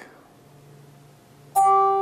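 A bell struck once about one and a half seconds in, ringing on with a clear, steady pitch. It is tolled in memory after a name of the dead is read aloud.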